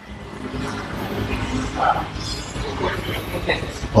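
Indistinct gym background noise: a steady low rumble with faint distant voices.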